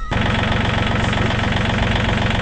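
Tractor engine running steadily at idle, with an even, rapid firing pulse.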